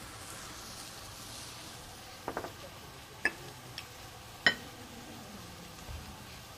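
Faint sizzle of a sherry-Worcestershire pan sauce reducing on the heat, with four light clinks of a utensil on the pan between about two and four and a half seconds in, the last the loudest.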